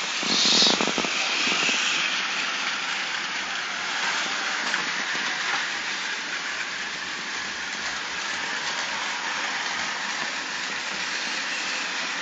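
Battery-powered Plarail toy trains running on plastic track: a steady whirring hiss of their small motors and gearing, briefly louder about half a second in.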